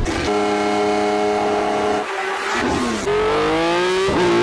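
A racing engine holding a steady speed, dropping off about two seconds in, then revving up again in rising sweeps near the end.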